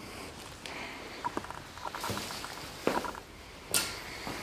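Faint footsteps on a shop floor with a few small clicks and one sharper click near the end.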